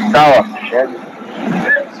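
A man's voice speaking in short, halting fragments with pauses between them.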